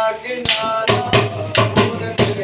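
A man singing a Punjabi folk song in long held notes, accompanied by a dholak hand drum struck in quick, uneven strokes.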